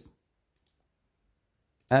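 Near silence broken by a single faint computer click just over half a second in. A man's voice trails off at the start and comes back near the end.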